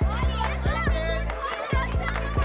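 Background music with a fast, steady beat and a heavy bass, with voices over it.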